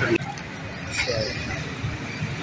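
Busy open-air market background: a steady low rumble of traffic and crowd, with a brief snatch of a voice about a second in.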